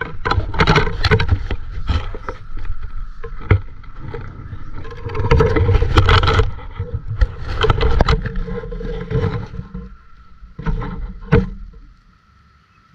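Close handling noise: water splashing with irregular knocks and scrapes as a caught catfish is lifted out of a shallow stream and set down on a wet rock.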